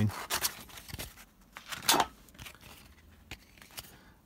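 Short scratchy rubs and clicks as sandpaper rounds off the square-cut edges of a plastic cobblestone sheet, with one sharper click about two seconds in.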